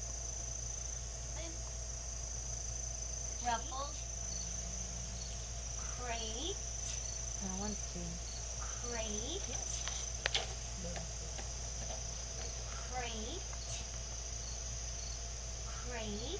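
Steady high-pitched chirring of crickets over a low steady hum, with a few faint, short voice-like sounds and a single sharp click about ten seconds in.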